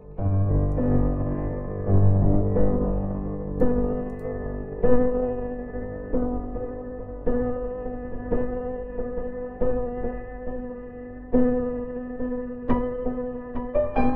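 Sampled upright piano, a Steinway 'Victory' vertical, played through a virtual instrument in slow extended chords, one struck roughly every second and left to ring. Deep bass notes sound under the chords in the first few seconds.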